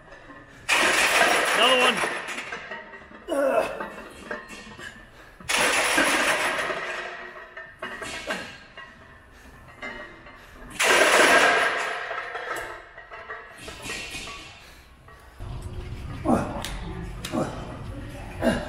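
A weightlifter's loud, strained grunts on heavy barbell reps, three long ones about five seconds apart with smaller breaths between them, over gym music.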